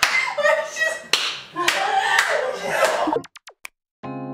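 A few sharp hand claps mixed with laughter and excited talk, all cutting off abruptly a little after three seconds in.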